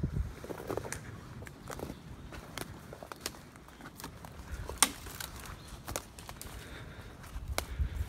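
Footsteps through a forest floor littered with dead twigs and dry grass, small twigs snapping underfoot now and then, with one sharper snap about five seconds in.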